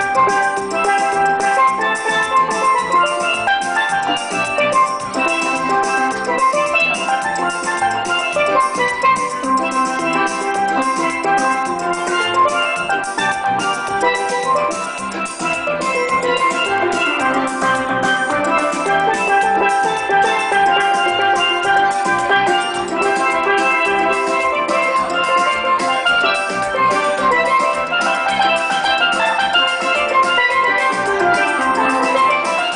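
A steel band playing: steelpans carry the melody and chords over drums keeping a steady beat.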